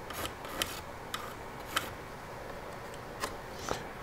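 Pencil and speed square handled on cedar 2x4 boards while marking a cut line: about half a dozen light, scattered clicks and taps against the wood.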